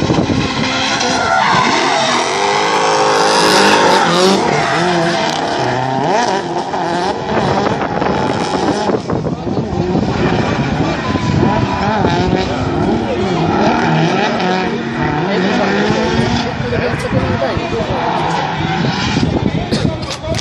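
Drift cars' engines revving up and down hard as they slide through the corners, with tyres squealing under the slide. Voices can be heard alongside.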